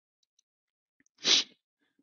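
A man's single short, sharp burst of breath noise, a stifled sneeze-like huff, a little over a second in, in an otherwise silent pause.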